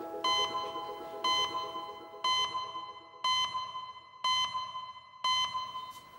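An electronic alarm beeping: six identical, even-pitched beeps, one a second, each held for most of a second.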